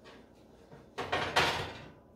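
Baking pan of biscuits pushed back across the metal wire rack of a countertop toaster oven, a scraping slide about a second in that lasts just under a second.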